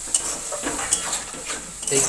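Potatoes and spice masala frying in oil in a metal kadai, with a steady sizzle. A spatula stirs them, clicking and scraping against the pan a few times.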